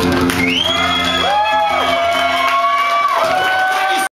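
An acoustic guitar's last chord rings out and fades while the audience cheers, with high gliding whoops from about half a second in.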